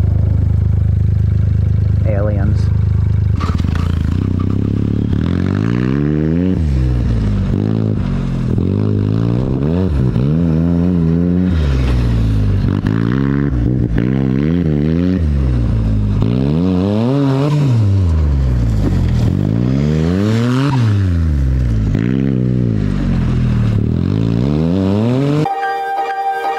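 Turbocharged off-road buggy engine holding a steady note for a few seconds, then revving up and down over and over, about every one and a half seconds, as the buggy is driven hard in circles on dirt. Music starts just before the end.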